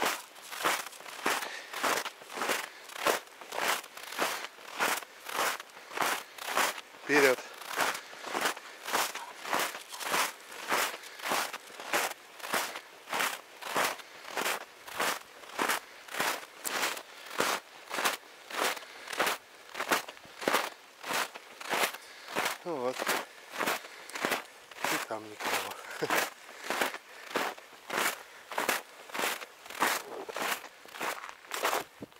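Footsteps of a walker in trainers crunching steadily through a light layer of fresh snow, about two steps a second. A few short falling cries break in, the first about seven seconds in and two more past twenty seconds.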